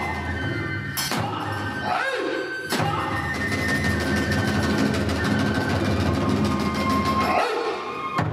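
Iwami kagura hayashi accompaniment: drums and hand cymbals play under a bamboo flute, with sharp strikes about one and about three seconds in. A swooping, howl-like glide rises and falls around two seconds in and again near the end.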